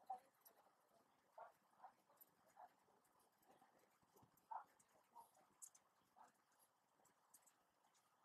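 Faint scratches and taps of a pen writing on paper, a few short irregular strokes in near silence.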